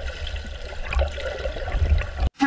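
Pool water churning and splashing around a swimmer doing laps, a low rumbling wash that swells and fades unevenly.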